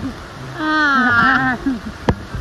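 A woman's drawn-out wordless vocal sound, about a second long and wavering in pitch, with brief murmured voice sounds just before and after it.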